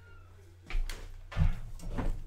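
Two loud knocks about 0.7 s and 1.4 s in, with rustling between them, from a person moving close to a desk microphone and putting on headphones. A low steady electrical hum sits under the quieter start.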